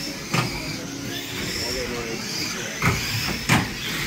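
Radio-controlled stock cars racing on a carpet track: small electric motors whining up and down, with sharp knocks of cars hitting each other or the barrier about a third of a second in and twice near the end.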